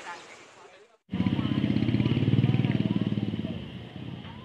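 A motor vehicle's engine passing close by: it starts abruptly about a second in after a brief gap, grows louder, then fades away.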